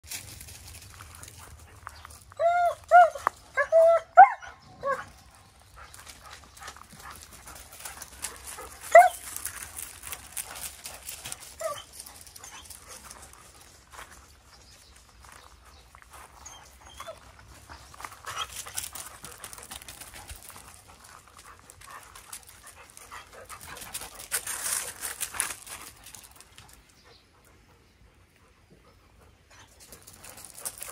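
A dog gives a quick run of about six short, high-pitched yips between two and five seconds in, then single ones near nine and twelve seconds. Later come stretches of scuffling noise on gravel.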